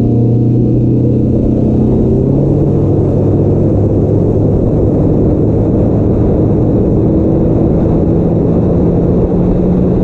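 Bass boat's outboard motor running steadily at cruising speed, a loud even drone whose pitch settles in the first couple of seconds and then holds.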